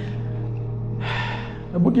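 A man's sigh, a loud breath into a handheld microphone about a second in, over a steady low background drone; speech begins just before the end.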